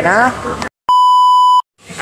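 Speech cut off abruptly to silence, then a steady high-pitched beep of under a second spliced in: an edited-in censor bleep covering part of the talk.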